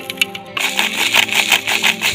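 Dry spice powder tipped from a scoop into a blender jar, heard as a rapid clatter of clicks that starts about half a second in. Background guitar music plays steadily under it.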